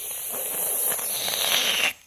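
A rough, crackling hiss right on the phone's microphone that cuts off suddenly near the end.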